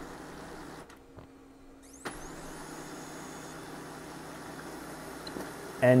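Brother HL-2270DW laser printer running a print job, a steady mechanical whir that is the paper pickup now working again after its feed-lever cam was reseated. The whir drops briefly about a second in and picks up again with a short rising whine at about two seconds.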